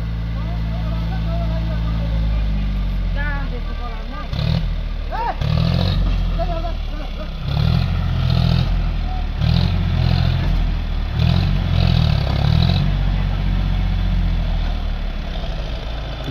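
Diesel farm tractor engine labouring as it pulls a trailer along a dirt track, its note surging and easing in repeated pulses through the middle. Faint voices are heard now and then.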